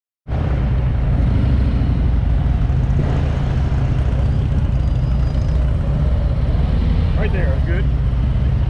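Large touring motorcycle engine running at low speed through a tight cone course, a steady low rumble that holds even throughout. A brief spoken word comes near the end.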